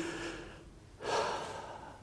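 A man draws a sharp breath close to a lectern microphone about a second in, and it fades away over the next second. At the start, the tail of his last spoken word dies away.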